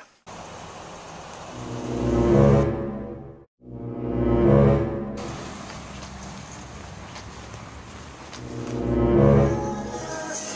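A deep, horn-like tone sounds three times, each blast swelling up and fading away, over a steady low background hum; the sound cuts out completely for a moment just before the second blast.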